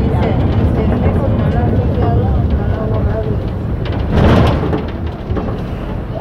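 Inside a running city bus: steady low engine and road rumble with passengers' voices in the background, and a brief louder rush of noise about four seconds in.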